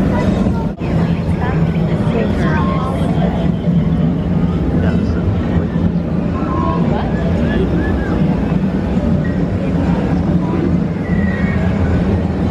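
Indistinct murmur of people's voices over a steady low hum, with scattered short snatches of chatter.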